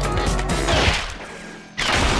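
Cartoon sound effects over orchestral music: a falling tone while the sound dies away, then, near the end, a sudden loud crash of a stone bridge collapsing into a canyon.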